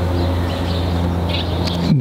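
A steady low mechanical hum that starts suddenly at the beginning, with a few short high chirps of birds a little past halfway through.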